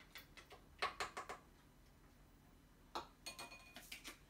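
Faint light clicks and taps of measuring utensils and ingredient containers being handled at a mixing bowl: a few ticks about a second in, and another cluster near the end with a brief thin ring.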